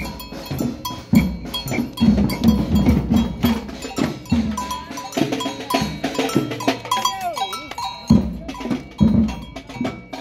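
Street protest drum band playing a steady rhythm: snare drums and a deep bass drum struck under the ringing clank of a hand-held metal bell. A wavering tone rises over the beat in the middle seconds.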